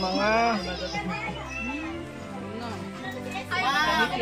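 Voices of people at a party, including high-pitched children's voices calling out, loudest at the start and again near the end, with music playing underneath.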